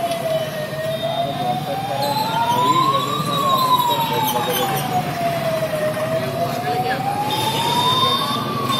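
Fire engine siren wailing, slowly rising and falling about every five seconds, over crowd chatter.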